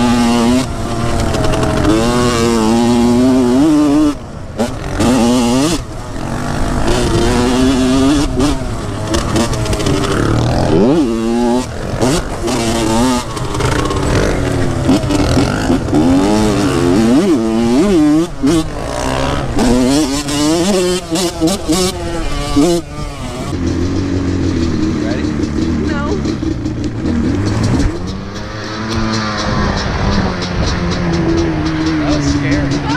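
Dirt bike engine heard from on board, revving up and down over and over as it is ridden, with a steadier, lower engine note in the last several seconds.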